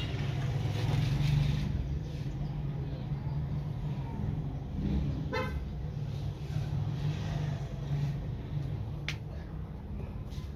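Steady low hum of a running engine, with a short horn toot about five and a half seconds in and a single click near the end.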